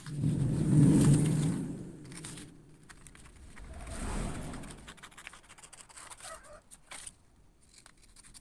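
Scissors cutting a paper sewing pattern, with the paper rustling and sliding as it is handled. The loudest stretch of rustling comes in the first two seconds and a smaller one comes around the middle, followed by faint scattered clicks.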